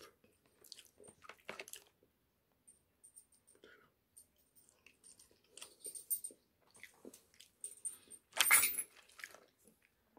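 Boiled shrimp being peeled by hand and chewed close to the microphone: irregular short crackles and clicks of shell and mouth, the loudest cluster about eight and a half seconds in.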